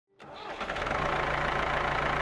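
1972 Ford 2000 utility tractor's 2.6-litre three-cylinder gasoline engine running steadily. The sound comes in just after the start and builds over the first second, then holds.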